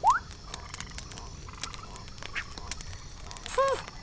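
Cartoon sound effects: a quick rising whistle-like glide at the start, then a low steady night background with faint scattered crackles, and a short pitched call shortly before the end.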